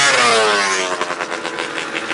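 An engine revving: its pitch peaks and then falls away as it comes off the throttle, running rough and choppy from about a second in.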